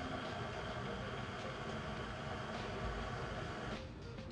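Electric stand mixer running steadily, beating the liquid ingredients together in its steel bowl; the motor stops near the end.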